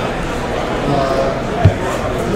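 Faint background voices and handling noise, with one short dull thump about one and a half seconds in.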